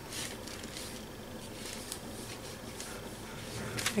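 An ink pad rubbed and dabbed over crumpled tissue paper glued on a card tag: faint, soft scuffing strokes repeated a few times a second.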